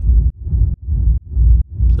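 Techno rumble reverb bass: a fully wet, low-pass-filtered reverb tail shaped into even pulses by LFO Tool and distorted through Softube Amp, pulsing about two and a half times a second with its weight deep in the low end.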